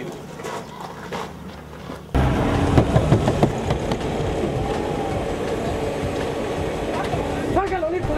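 Faint murmur, then a sudden cut to a loud, steady rumbling rush outdoors: a minivan running, with wind on the microphone. A brief voice sounds near the end.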